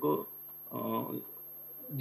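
A man's brief hummed hesitation sound, a low "mm" lasting about half a second, between phrases of speech.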